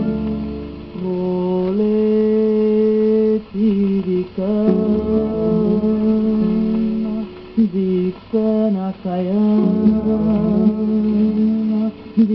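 Old 78 rpm shellac record playing a 1940s Brazilian song. A wordless melody of long held notes with short glides between them sounds over plucked acoustic guitar accompaniment.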